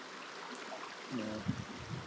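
Shallow creek water running over rocks, a steady rushing hiss.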